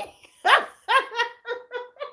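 A woman laughing: a high whoop that rises and falls, then a run of short breathy pulses that fade out.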